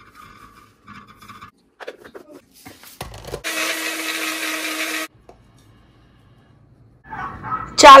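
Electric kitchen blender running for under two seconds, grinding rice into flour, with a steady motor hum that cuts off suddenly. A few light knocks of handling come before it.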